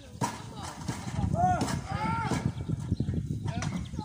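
Two short shouted calls, each rising and falling in pitch, about a second and a half and two seconds in, over a dense low rumble.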